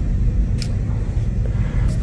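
Steady low rumble of store room noise and handheld phone handling, with two faint light clicks, one about half a second in and one near the end, as a plastic wipes canister is turned in the hand.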